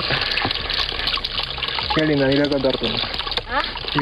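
Spring water trickling down a rock face into a plastic bottle held under it, a steady splashing hiss. A brief voice about two seconds in.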